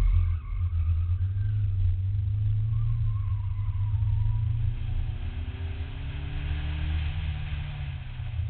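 Nissan Silvia S13's engine under hard driving through an autocross course, buried in heavy wind rumble on the microphone. The engine pitch climbs steadily over the second half as the car accelerates.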